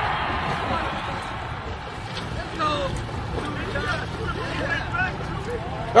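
Low wind rumble on the microphone over open water, with a hiss of water that fades over the first couple of seconds. Faint distant voices call out from about halfway through.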